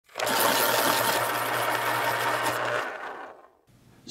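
A small machine's fast, steady mechanical rattle over a low motor hum, fading out about three seconds in.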